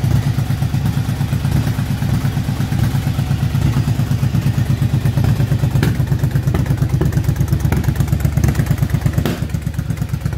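2007 Yamaha V-Star 1100's air-cooled V-twin running at a steady idle with an even, fast pulse, on its freshly rebuilt carburetors. Two brief sharp clicks come through, one about six seconds in and one near the end.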